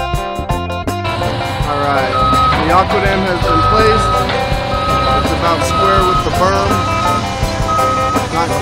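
Background music gives way about a second in to excavator engines running as the machines travel on their tracks, with a repeating high travel-alarm beep roughly once a second.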